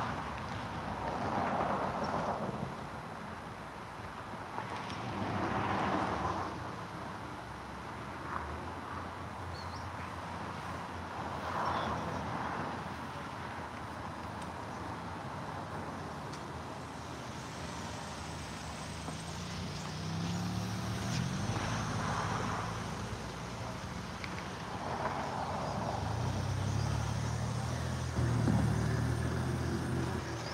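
Outdoor traffic: cars passing by in several swells of tyre and engine noise. Near the end a low engine hum grows louder as an SUV drives out through the gate toward the microphone.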